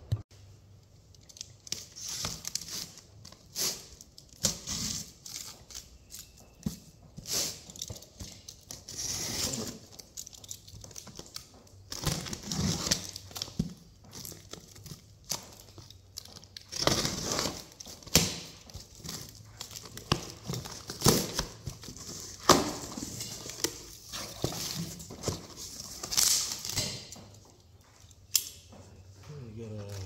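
Plastic shrink wrap being torn and crinkled off a cardboard engine carton, and the carton opened, in irregular bursts of rustling and tearing.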